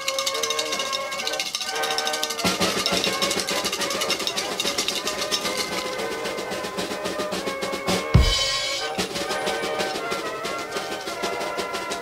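A fast snare drum roll over steady musical backing, with one heavy low drum hit about eight seconds in before the roll carries on.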